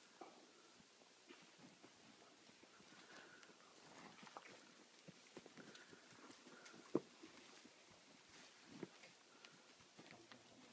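Mostly near silence, with a few faint, scattered knocks and scuffs: cattle shifting their hooves on dirt. The sharpest knock comes about seven seconds in.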